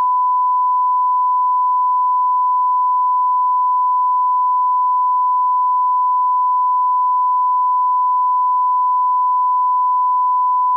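Steady 1 kHz line-up tone, a single unbroken pure beep, laid with SMPTE colour bars on archival videotape as the audio level reference.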